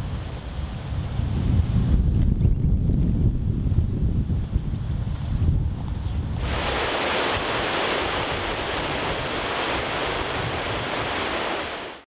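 Wind buffeting the microphone, an uneven low rumble. About six and a half seconds in it gives way abruptly to a steady, even rushing hiss.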